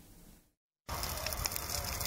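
Near silence for about the first second, then an open fire of burning wood and rubbish crackling steadily with scattered small pops.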